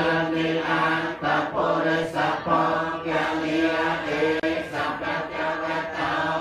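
Buddhist group chanting: many voices chant together on a steady held pitch, in phrases of about a second with brief breaks between.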